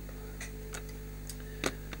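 A few light computer-mouse clicks, about five spread over two seconds with the sharpest near the end, as the PC's volume slider is adjusted, over a steady electrical hum.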